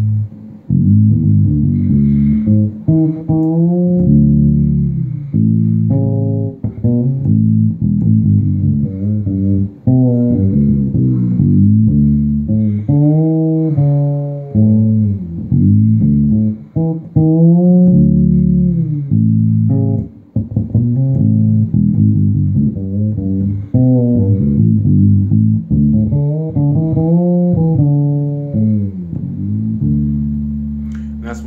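SX Ursa 3 fretless bass played through an amp on its bridge pickup alone with the tone knob rolled all the way off, giving a dark sound with little top end. A steady run of notes, many of them sliding up or down in pitch, with short breaks between phrases.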